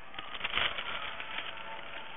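Newspaper and dry leaves rustling and crackling as the paper is pressed down over the top of a basket of leaves, with many small irregular crackles over a steady hiss.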